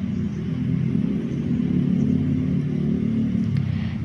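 Steady low rumble of motor traffic, with a faint low hum running through it and no sudden sounds.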